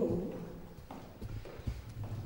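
Footsteps of a person walking on a stone-tiled floor: a series of sharp steps in the second half.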